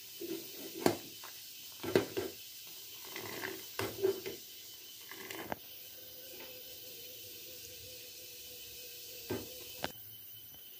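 A metal spoon stirring tea in an aluminium saucepan, clinking and scraping against the pan a handful of times in the first half. After that only a faint steady hiss with a thin hum is left.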